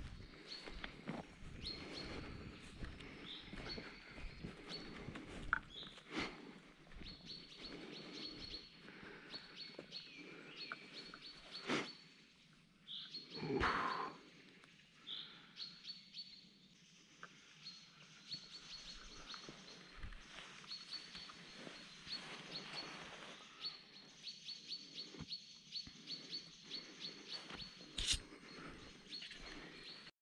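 Forest birds singing, with many short high chirps repeating throughout, over scattered footfalls and twig snaps on wet ground. There is one louder falling sound about halfway through.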